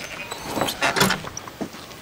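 A few short, soft clicks and knocks over faint outdoor background noise.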